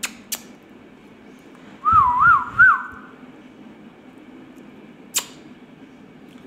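A warbling whistle about a second long, rising and falling three times, a couple of seconds in. Sharp clicks come at the start, just after, and again about five seconds in.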